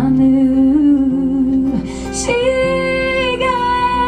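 Live acoustic guitar accompaniment of a slow ballad, with a woman's voice holding long wordless notes over it. A long note is held from about halfway through.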